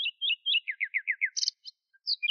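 Small bird singing: a quick run of repeated high chirps, then about five fast notes that each slide downward, ending in a brief higher trill.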